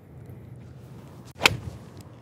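Golf iron striking a ball off turf: one sharp, crisp click about a second and a half in. It is a well-struck, solid shot with a nice sound to it.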